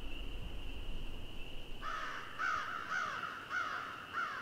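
A bird giving a run of short repeated calls, roughly two a second, starting about two seconds in, over a faint steady high-pitched whine.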